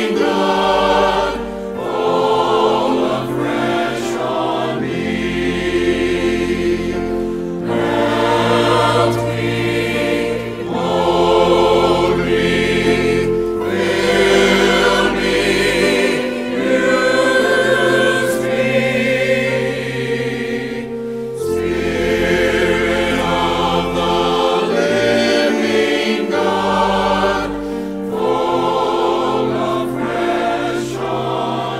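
A mixed church choir singing an anthem in parts, in phrases of a few seconds, with keyboard accompaniment holding low bass notes beneath the voices.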